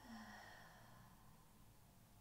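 A woman's soft sighing exhalation, about a second long and fading, a release breath while pressing the points between shoulder and neck. Otherwise near silence with a faint low hum.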